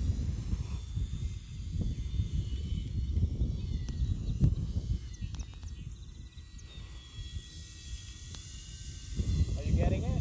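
Wind buffeting the phone's microphone, a loud uneven low rumble, with a faint steady high whine from the radio-controlled model plane's motor flying overhead.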